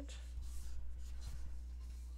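Soft scratching and rubbing for about a second, over a steady low hum.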